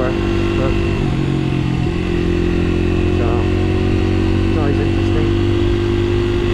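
Honda XR80R's small four-stroke single-cylinder engine running steadily while the bike is ridden. Its note drops about a second in and comes back up just before two seconds.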